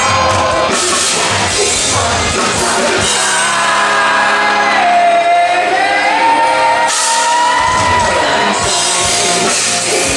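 Live rock band with a male lead singer. About three seconds in, the drums and bass drop out and the voice holds a long, sliding sung line over sustained chords. The full band comes back in near the end.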